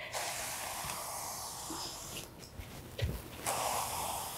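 Applicator pad wiping excess stain and finishing oil off a stained wood board along the grain: a steady soft rubbing hiss, with a short break and a light knock about three seconds in.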